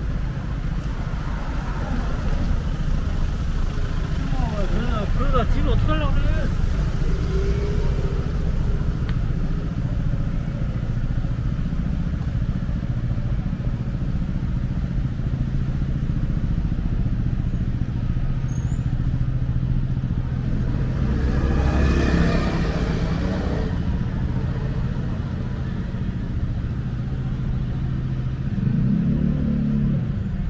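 Urban road traffic: a steady rumble of cars and buses running past. A vehicle passes close, loudest about 22 seconds in.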